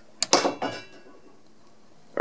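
A sharp click as the rocker switch on a 12 V CCTV power-supply box is flipped on, followed by a brief noisy sound that dies away within about a second.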